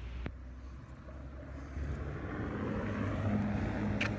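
A car running nearby, its engine and tyres growing louder over the second half, over a low steady outdoor rumble; one brief click about a quarter second in.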